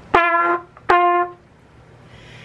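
Trumpet playing two short notes on the same pitch, each about half a second long, with crisp tongued 't' attacks that give a sharp start to the tone.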